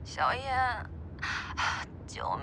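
A woman's wordless vocal sound: a short, high, wavering voiced sound followed by two breathy exhalations.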